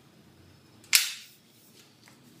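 A single sharp snap about a second in, as a metal Fixi clamp holding a brush locks onto the cone tip of an extension pole.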